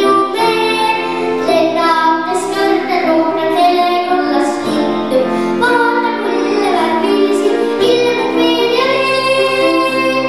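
A young girl singing a song into a microphone over instrumental accompaniment.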